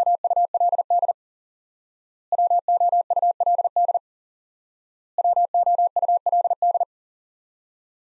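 Morse code tone at 40 words per minute sending the word "would" three times: three rapid runs of dots and dashes on one steady pitch, each about a second and a half long with about a second's gap between them.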